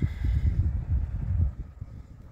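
Wind buffeting the microphone: a low, uneven rumble that dies down about one and a half seconds in.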